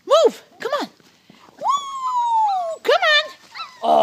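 Labrador retriever puppy whimpering and yelping: two short high cries, then a long high whine that slowly falls in pitch, then another short cry.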